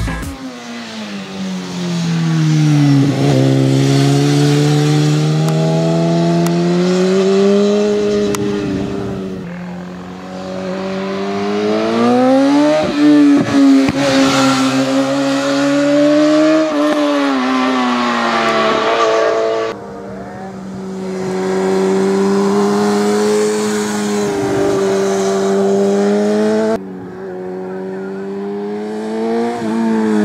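A BMW four-cylinder superbike racing uphill at full throttle, its engine revving up and dropping back through gear changes and braking into bends, so the pitch climbs and falls again and again. The sound breaks off abruptly between shots, about a third and again about two-thirds of the way through.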